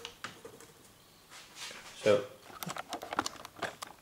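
Plastic ruler and pencil handled on drawing paper: a short scrape or knock about two seconds in, then a quick run of light clicks and taps.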